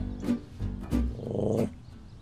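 A dog gives a short growl about a second in, over light plucked-guitar background music.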